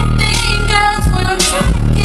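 Live hip-hop music played loud over a concert PA: a woman rapping into a microphone over a heavy bass beat.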